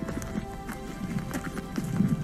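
Background music with steady held tones, over which runs a quick, irregular series of short low knocks, about six a second.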